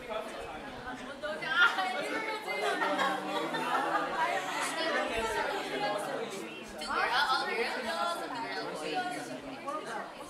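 Several people talking at once: overlapping group chatter in a large room.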